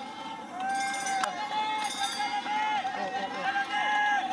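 Voices at the trackside shouting a string of long, drawn-out calls one after another, with a sharp click about a second in.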